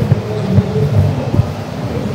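Steady low rumble of background noise in a large exhibition hall, with faint indistinct voices in the distance.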